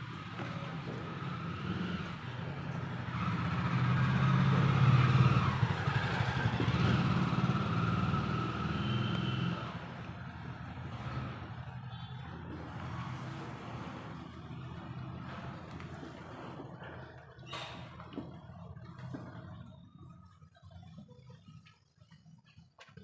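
A motor vehicle engine running nearby, a low hum that swells to its loudest about five seconds in and fades away by about ten seconds. A single sharp click follows later.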